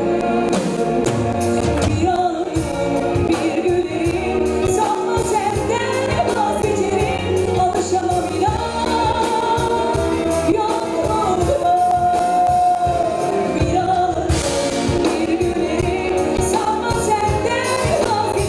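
A woman singing a Turkish popular song into a microphone, accompanied live by a small orchestra of strings and flute over a steady beat; about twelve seconds in she holds one long note.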